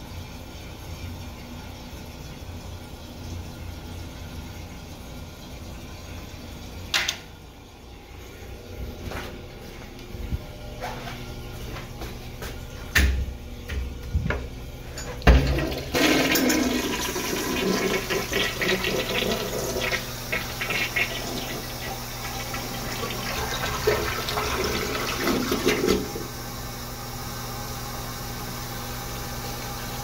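Two-piece gravity tank toilet: water hisses as the bowl refills, and it cuts off sharply about seven seconds in. A few clicks follow, with a loud click from the lever handle about fifteen seconds in. Then comes a loud rushing flush lasting about ten seconds, which settles into a steadier hiss of the tank and bowl refilling.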